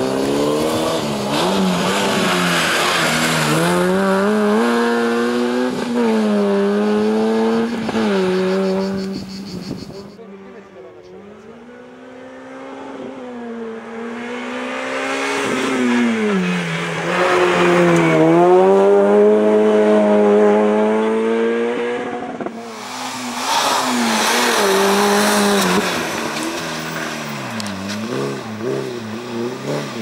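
Peugeot 106 slalom car's engine revving up and backing off over and over as it is driven hard through tight cone chicanes, the pitch rising and falling every second or two. It goes quieter and more distant about a third of the way in, then comes back loud.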